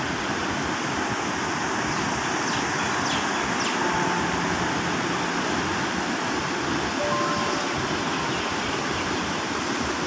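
Turbulent river water rushing steadily through the gates of a barrage.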